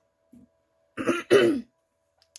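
A woman clearing her throat twice in quick succession, about a second in: the sign of a sore throat that is making her voice fail.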